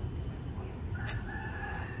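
A rooster crowing once: a single held call about a second long, starting about halfway through.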